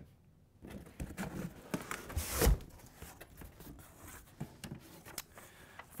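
A cardboard box being opened by hand: the flaps are pulled open and the cardboard rustles and clicks, with one louder rip or scrape about two seconds in.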